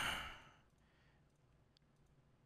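A faint breath out into a close microphone, followed a little later by a single soft computer-mouse click.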